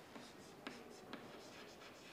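Chalk writing on a chalkboard, faint, with a few sharp ticks as the chalk strikes the board.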